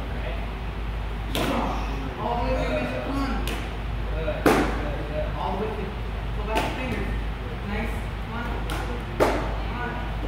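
Sharp smacks of a child's strikes hitting a handheld board or target pad, about five times over the stretch, the loudest about four and a half seconds in, over children's voices in the background.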